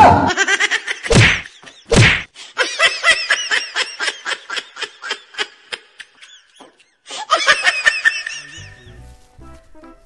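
Edited-in comedy sound effects: three loud whacks in the first two seconds, then a quick run of short, pitched chirps that spreads out and fades, with a second shorter run near the end.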